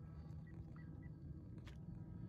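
Low wind rumble on the microphone, with a faint, steady high whine from the electric motor of a distant foam-board RC plane. Three short high chirps come about half a second to a second in, and a sharp click near the end.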